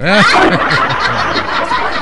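Several people laughing together, breaking out suddenly and carrying on at a steady level.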